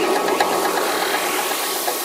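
Electronic dance music breakdown with the bass and beat dropped out: a steady wash of noise with a fine, rapid clicking texture and no melody.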